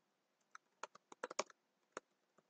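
Faint computer keyboard typing: a quick run of keystrokes starting about half a second in, with one more near the end.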